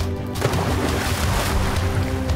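A person diving into the sea: a sudden splash about half a second in, with a rush of spray that dies away over about a second, heard over background music.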